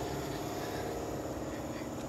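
Steady mechanical hum with a low drone, like a motor running nearby, heard as outdoor background.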